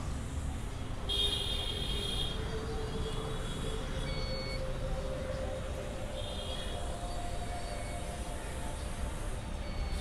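Outdoor ambience: a steady low rumble of wind and distant traffic, with a faint hum underneath and a few brief high chirps.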